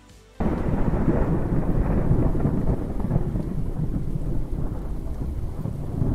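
Thunderstorm sound effect: thunder rumbling with rain, cutting in suddenly about half a second in and running on steadily.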